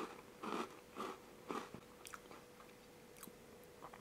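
A person chewing a mouthful of Domino sandwich biscuit with a Turkish pepper (salmiak) filling: four soft, faint chews about half a second apart, then only small faint mouth sounds.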